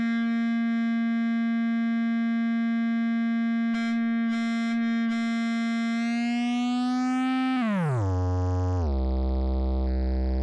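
Korg Electribe EM-1 synth sounding one sustained, harmonic-rich note held level for about seven and a half seconds, with a few faint ticks around the middle. The pitch then sweeps down steeply in steps to a low buzzing tone: the global pitch falling as the machine's replacement clock oscillator is slowed.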